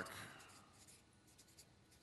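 Faint strokes of a felt-tip marker drawing on flip-chart paper.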